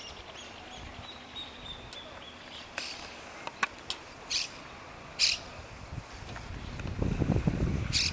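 Open-air background with scattered short, high bird chirps, the loudest about halfway through, and a low rumble building near the end.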